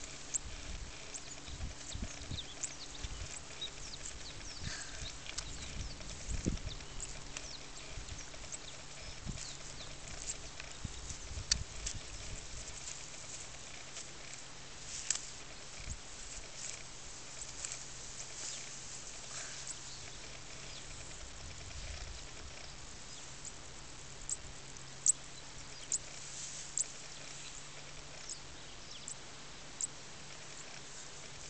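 Quiet outdoor field ambience with scattered small clicks and rustles, likely grass and movement close to the microphone, and a few sharper clicks near the end.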